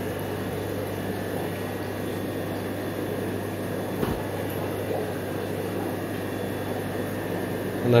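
Aquarium air pumps and sponge-filter aeration running: a steady hum with an even hiss, and a single soft bump about four seconds in.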